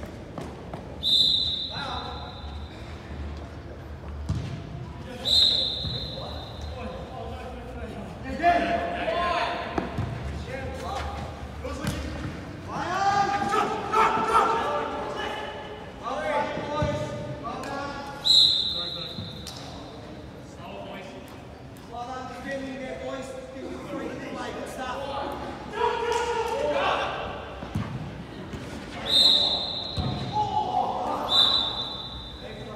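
Indoor football match in a large echoing hall: players shouting and calling to each other, with occasional thuds of the ball being kicked or bouncing. A referee's whistle blows four short steady blasts, about a second in, about five seconds in, around eighteen seconds, and near the end.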